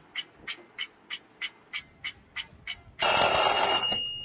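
Clock-tick sound effect, sharp even ticks about three a second, then about three seconds in a sudden loud ringing hit with high bell-like tones that fade out near the end.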